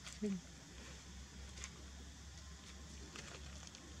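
A brief vocal sound, falling in pitch, just after the start, then a quiet background with a few faint soft clicks.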